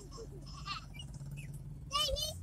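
Steady low hum of a car's engine heard from inside the cabin while it crawls in traffic, with a few faint voice fragments.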